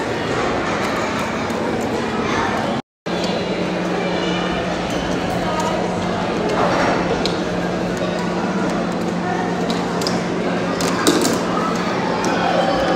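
Background chatter of many indistinct voices in a busy, echoing indoor hall, with a steady low hum under it. The sound drops out completely for a moment about three seconds in, where the recording is cut.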